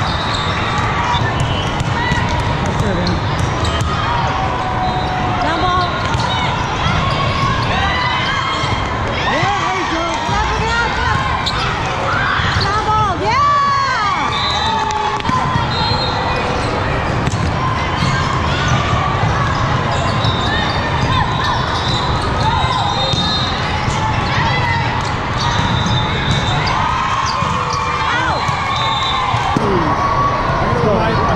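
The noise of a large hall full of volleyball courts: many players' and spectators' voices calling and chattering, with volleyballs being struck and bouncing on the hard court floors again and again.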